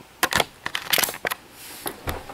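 Handling noise of a camera held close: a quick string of clicks, taps and rubbing as fingers fumble over its body looking for the record button to stop recording.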